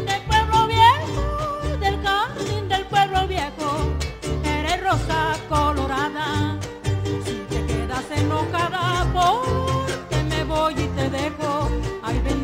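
Acoustic folk string band of guitars, violin and harp playing an upbeat song over a steady strummed and bass pulse, with a woman singing a melody that slides up into several of its notes.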